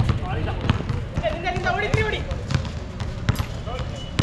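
A basketball bouncing on a hard court during play, a run of sharp separate bounces, with players' voices calling out in the middle.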